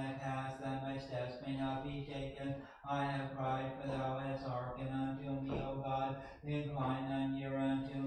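A man's voice chanting on one held note, in the monotone of Orthodox liturgical reading, with short breaks for breath about three seconds in and again about six and a half seconds in.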